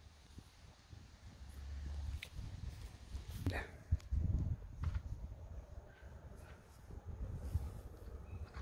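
Faint, soft, irregular hoofbeats of a ridden horse on a grass and dirt track, over a low rumble that swells and fades.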